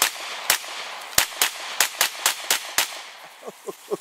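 Beretta CX4 Storm 9mm semi-automatic carbine fired rapidly, about nine sharp shots in under three seconds, then a short pause near the end.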